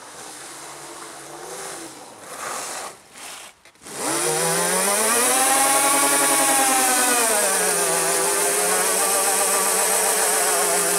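A 72-volt electric quad's motor whining, fainter and wavering in pitch for the first few seconds, then much louder from about four seconds in. The whine climbs in pitch, holds high, and settles a little lower and steady as the rear wheels spin in a burnout.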